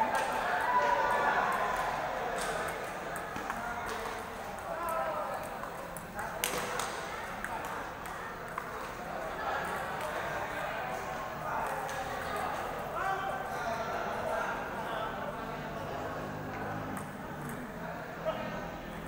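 Table tennis ball clicking off bats and table now and then, over a steady babble of many voices echoing in a large sports hall.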